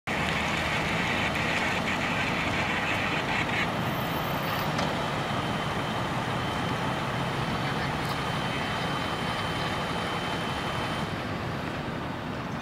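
Fire apparatus engines idling, a steady low engine rumble. A hiss runs over it and stops suddenly about three and a half seconds in, and a thin steady high tone follows.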